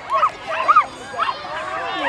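Many children shouting and calling out at once, high-pitched voices overlapping, with a couple of sharp loud shouts a little before the middle.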